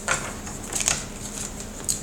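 Tarot cards being handled, with a few short rustles and snaps of card stock, two close together about halfway through and one near the end.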